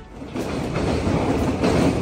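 Freight train of container wagons rolling past, a steady rumble of wheels on the rails that comes up about half a second in.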